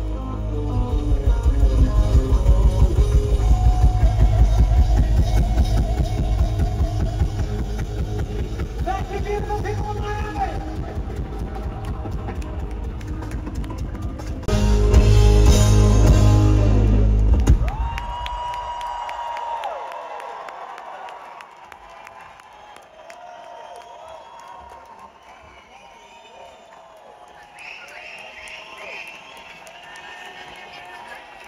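Live rock band with drum kit playing loudly, then ending the song on a final crashing chord about halfway through that rings out and dies away. An audience then cheers and whistles.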